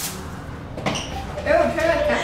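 A fork tossed onto a tabletop lands with a single sharp clatter right at the start, followed by a weaker knock a little under a second later.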